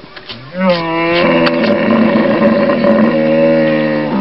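Hippopotamus bellow: one long, loud call at a nearly steady pitch, starting about half a second in and lasting over three seconds.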